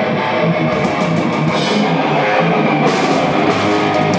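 Live heavy metal band playing: distorted electric guitars over a drum kit, loud and steady, with no vocals.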